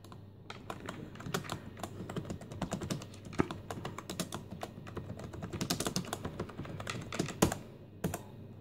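Steady typing on a computer keyboard, quick keystrokes clicking one after another, with a louder key press about three and a half seconds in and another near the end.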